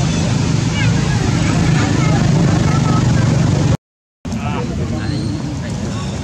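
Steady low rumble with short high chirps and squeaks scattered over it; the sound drops out completely for about half a second a little before the end.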